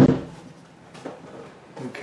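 Heavy wooden workbench top set down onto its base: one loud, low thump at the start, followed by a couple of light knocks about a second in and near the end.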